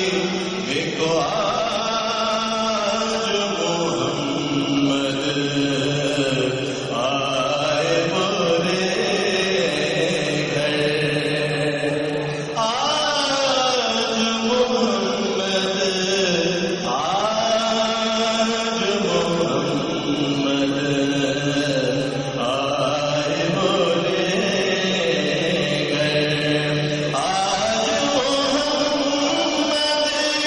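A man reciting an Urdu naat in long, melodic phrases, each held for several seconds and gliding up and down in pitch.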